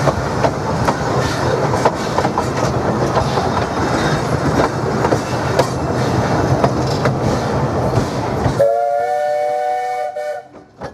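Steam-hauled narrow-gauge train running, heard from the carriage: a steady rumble with the clicking of wheels over rail joints. About a second and a half before the end the running noise cuts off suddenly and the Baldwin 4-6-2 locomotive's chime whistle sounds, several notes held together.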